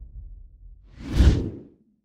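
A single whoosh sound effect from an animated logo intro, swelling and fading about a second in, as the low rumble of the intro dies away at the start.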